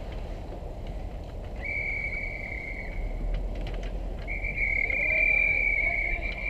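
Ice hockey referee's whistle blown twice to stop play: a short steady blast, then a longer one lasting about three seconds.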